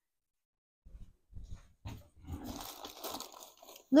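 Handling noise from gloved hands laying a wooden skewer across wet silk on a table: a few soft knocks, then about two seconds of rustling that stops just before speech resumes.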